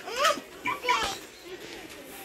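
A young child's voice: two short, high-pitched vocal sounds in the first second, then only a faint background murmur.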